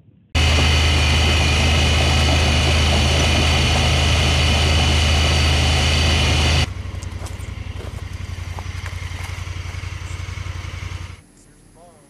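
Vehicle engine running loudly, heard from inside a vehicle driving on a gravel road. About six and a half seconds in it drops to a quieter, evenly pulsing engine sound, which cuts off about eleven seconds in.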